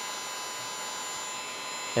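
Electric heat gun blowing steadily, a constant rushing air noise, as it shrinks clear heat-shrink tubing over a soldered wire splice.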